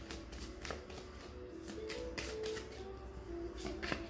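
A deck of divination cards being shuffled and handled by hand: a quick run of soft card clicks and flicks, over faint background music.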